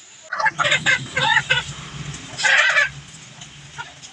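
Native chicken calling: a quick run of short calls, then a longer, harsher call about two and a half seconds in.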